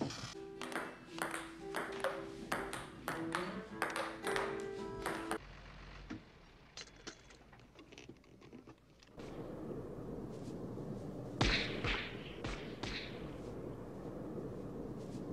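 Electronic chess computer shorting out: a run of sharp electronic pings and crackles over steady tones that stops about five seconds in. From about nine seconds, a steady hiss of wind with a few louder gusts.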